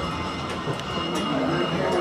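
Cable-hauled incline railway car running on its track, heard from inside the cabin as a steady low rumble with a few light clicks.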